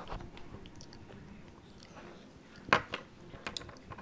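Quiet handling noises: scattered small clicks and taps as a small plastic toy figurine and plastic egg capsules are handled on a tabletop, the sharpest click about three-quarters of the way through.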